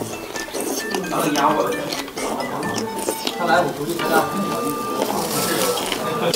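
Busy restaurant hubbub: indistinct chatter from other diners, with dishes and cutlery clinking.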